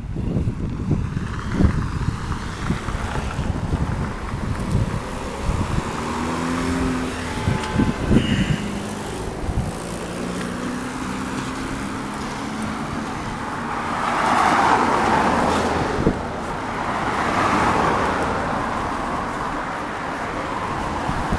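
Street traffic: cars driving past, with two passing vehicles swelling and fading in the second half.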